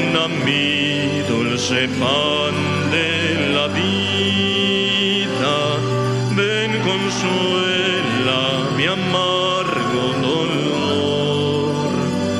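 A hymn sung in Spanish to a steady instrumental accompaniment of long held notes, with the voices' wavering lines entering and pausing phrase by phrase.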